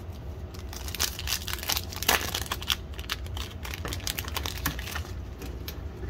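Crinkling and tearing of a trading-card pack's foil wrapper as it is opened by hand, a dense run of crackles, loudest about two seconds in.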